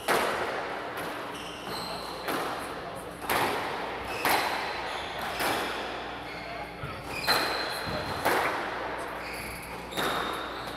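Squash rally: the rubber ball cracks off the rackets and the court walls about once a second, each hit ringing in the glass-walled court. Short high squeaks, typical of shoes on the wooden floor, come between the hits.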